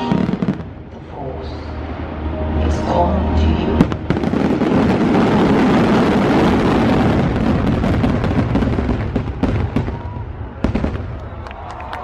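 Fireworks going off close by, loud: sharp single bangs, then from about four seconds in a dense run of many shells bursting and crackling at once. It thins out to a few separate reports near the end.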